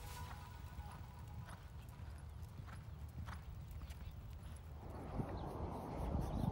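Faint hoofbeats of a horse cantering on sand arena footing, over a low steady rumble. Near the end a louder, closer scuffing and rustling comes in.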